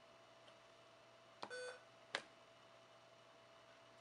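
Near silence with a faint hum, broken about a second and a half in by a click and a short electronic beep from the Soundstream VR-931nb touchscreen head unit as a button is pressed, then a single sharp click. No music comes through, though the unit shows the iPod track as playing.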